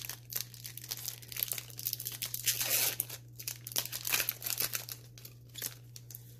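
Plastic booster pack wrappers and trading cards crinkling and rustling as they are handled, in a run of quick crackles with a denser crinkle about two and a half seconds in, over a steady low hum.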